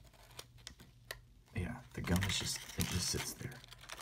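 Waxed-paper wrapper of a 1990 Topps football card pack crinkling, with light clicks of the card stack being handled as it is slid out, and a few seconds of indistinct mumbled speech in the middle.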